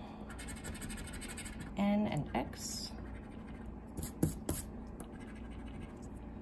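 A coin scratching the coating off a paper scratch-off lottery ticket, with quick rasping strokes through the first second or so. A few sharp clicks follow around four seconds in.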